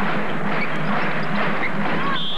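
Steady crowd din of a packed basketball arena during live play, a wash of many voices with no single one standing out.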